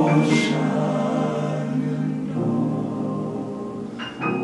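A men's choir singing sustained chords in close harmony, moving to a lower chord about halfway through.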